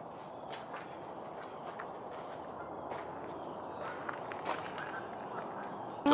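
Quiet outdoor ambience among trees: a steady low hiss with a few faint, soft crunches, like steps on the forest floor.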